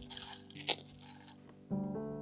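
Wet red lentils sliding from a sieve into a saucepan, a patter of falling grains with one sharp click near the middle, over background music that grows louder near the end.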